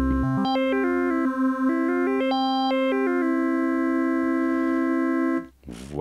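Modal Argon 8M wavetable synthesizer holding a note while its Spread knob is turned: added oscillators stack intervals and octaves above and below, so the upper notes step up and down for about three seconds. Then a steady chord holds and cuts off suddenly near the end.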